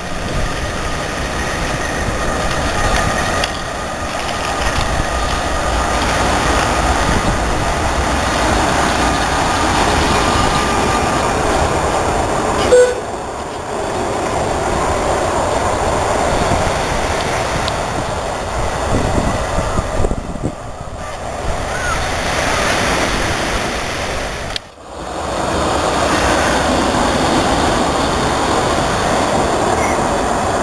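Wooden electric tram of the Sóller line running on street-embedded rails, a steady rolling rumble of wheels on track. There is a brief sharp sound a little after the middle.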